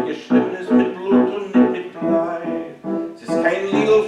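Grand piano played alone between sung verses: a run of separately struck chords, roughly two to three a second. The singer's voice comes back in near the end.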